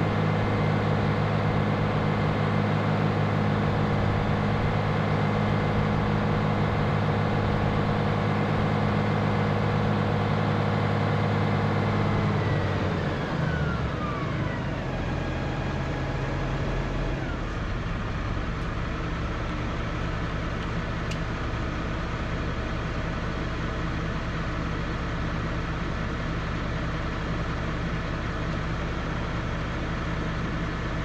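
Valtra tractor's diesel engine running steadily under way, then its note falls in two steps from about twelve seconds in as the tractor slows and stops, settling into a quieter, lower idle.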